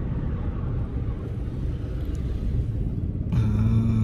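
Steady low rumble inside a car's cabin. Near the end a voice starts humming a held note.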